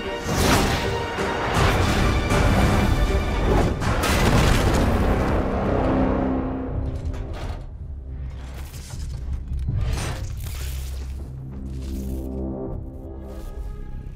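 Dramatic film score with heavy booms and crashing impacts in the first half, easing into quieter sustained music for the rest.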